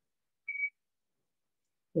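Near silence, broken about half a second in by a single short, high, steady whistle-like tone.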